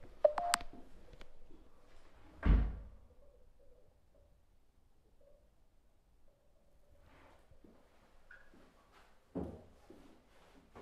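A sharp click with a short ring just after the start, then a loud dull thunk about two and a half seconds in, and a softer thump near the end.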